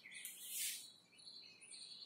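Faint bird chirps in the background, with a short scratchy stroke of a marker on a whiteboard about half a second in.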